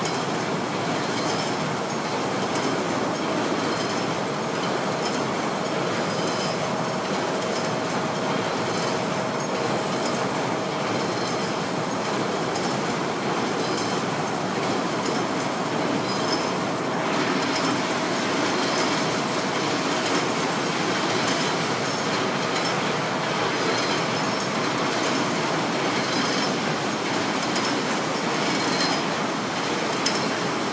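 PP tape extrusion line running under test, a loud, steady mechanical din. A faint steady whine rises out of it for much of the time.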